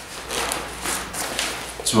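Horseshoe zip on an Arc'teryx Brize 25 backpack being pulled open in about four short rasping runs, with the pack's fabric rustling.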